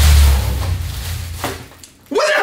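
A deep bass boom with a hiss above it, fading away over about two seconds, typical of an edited-in dramatic impact sound effect.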